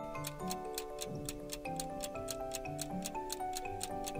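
Light background music with a quiz countdown ticking sound effect over it: quick, even clock-like ticks while the answer is awaited.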